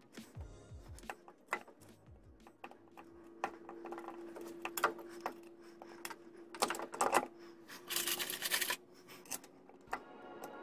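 Small clicks, taps and scrapes of hands working on a 46RE automatic transmission's valve body from underneath, with a brief rustling scrape near the end and a faint steady hum through the middle.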